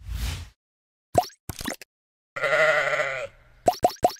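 Sound effects of an animated channel ident: a short whoosh, two quick pops, then a sheep's loud, wavering bleat lasting about a second, followed by a fast run of four pops as logos appear.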